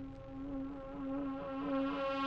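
A steady buzzing drone in the title music: one held pitched tone with a slight waver, slowly swelling.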